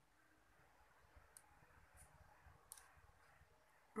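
Faint computer mouse clicks, three short ones spaced well apart, over quiet room tone.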